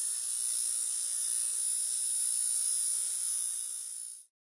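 Electronic sound effect for an animated title: a steady high hiss over a faint low hum, easing off slightly near the end.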